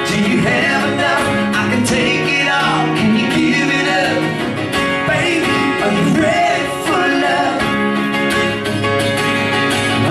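A man singing a country song live, accompanying himself on a strummed acoustic guitar.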